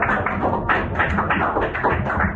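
Group of people applauding, many quick overlapping hand claps.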